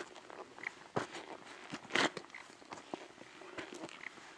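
Footsteps crunching on a dirt and rock trail: scattered steps and scuffs, with a sharper knock about one second in and the loudest crunch about two seconds in.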